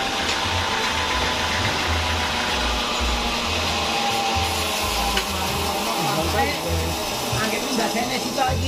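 Homemade band sawmill running steadily with a constant whine, while voices talk in the background.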